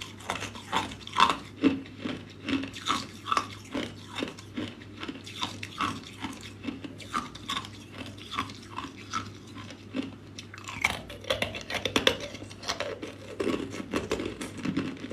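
Clear ice cubes being chewed, crunching sharply about two or three times a second, with a denser run of cracking near the end as more ice is bitten.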